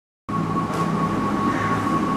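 Steady room noise, a low hum with a thin, even high whine above it, starting abruptly about a quarter second in.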